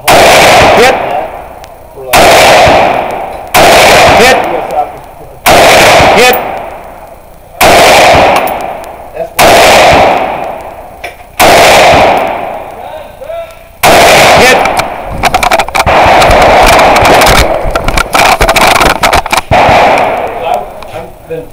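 AR-style semi-automatic rifle fired right beside the microphone, very loud: about eight shots spaced roughly two seconds apart, then a fast string of shots in the last third.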